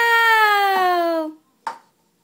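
A drawn-out exclamation of "Wow!" in a high voice, held for over a second and sliding slowly down in pitch. About a second and a half in comes a short knock, a plastic cup set down on a wooden table.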